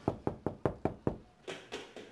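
A quick run of six knocks, about five a second, followed by lighter, sharper taps at a steady, slower pace.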